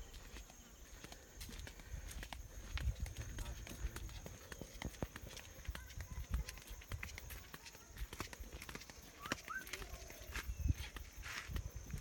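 Footsteps on a dirt footpath: irregular scuffs and soft clicks of walking, with a faint steady high-pitched tone in the background.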